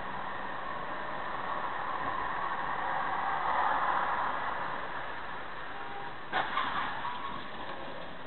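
Car cabin noise while driving at highway speed: steady road and engine noise through a dashcam microphone. It grows louder about three to four seconds in, and a few sharp clicks come about six seconds in.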